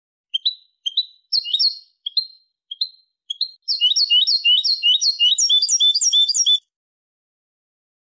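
European goldfinch (jilguero) singing a Malaga-style song phrase: a few separate high chirps, then a fast run of repeated notes from about halfway in, stopping abruptly. It is a clean recorded phrase of the kind played to tutor young goldfinches.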